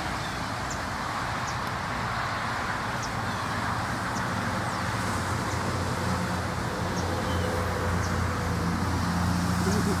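Steady background road-traffic noise, with the low hum of a nearby motor vehicle's engine that grows louder over the second half.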